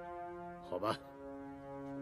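Drama background score: slow, sustained held chords that shift to a new chord about a second in. A short spoken word cuts in briefly near the middle.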